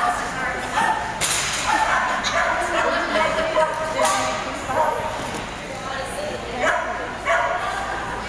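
A dog barking a few times, in short sharp barks, while running an agility course, over people's voices in a large hall.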